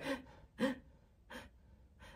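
A woman's two short gasping breaths, about half a second and a second and a half in, like someone gasping for air.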